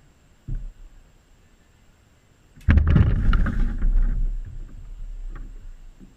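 A water balloon bursts on a wooden table with a sudden loud splash about two and a half seconds in, the water spattering and running off as the sound fades over the next few seconds. A brief knock comes about half a second in.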